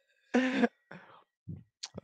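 A man chuckling in a few short, broken sounds, the first and loudest about a third of a second in.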